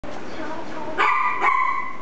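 Puppy giving two high-pitched, drawn-out yips, the first about a second in and the second half a second later.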